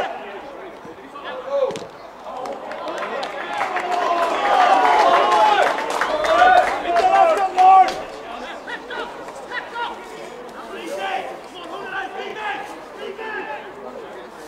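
Several men shouting over one another, with no clear words, rising to their loudest a few seconds in and then falling back to scattered calls. A few sharp knocks cut through the voices.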